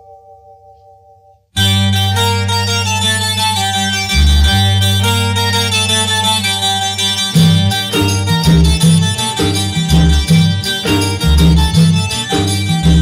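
Instrumental interlude of a 1980s Tamil film song. A held chord dies away, then about a second and a half in the band comes in loudly over a steady bass. From about seven seconds the bass and percussion play a rhythmic beat.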